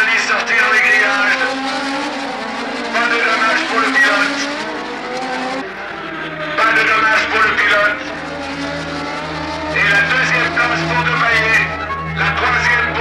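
1970s Formula One racing engines revving hard as cars pass at speed, one pass after another about every three seconds. A low steady hum joins about halfway through.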